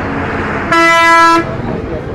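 A vehicle horn sounds one steady, loud blast of under a second, over street noise and voices.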